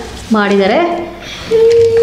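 Speech: a person talking, ending on one long held sound.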